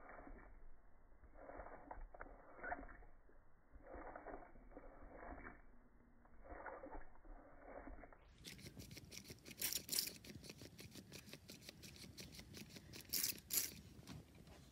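Water poured in a thin stream onto potting soil in a plastic cup pot, a dense crackling trickle that starts about eight seconds in. Before it there are only soft, muffled rustling noises about every second and a half.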